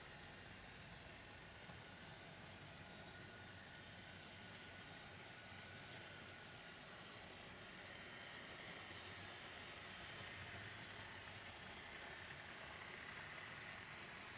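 Faint, steady running noise of 00 gauge model trains: small electric motors and wheels rolling on the track, growing slightly louder in the second half.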